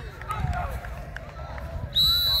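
Distant voices of players and coaches calling out during a running drill, over a steady low rumble, with scattered footfalls. A loud, steady whistle blast starts at the very end.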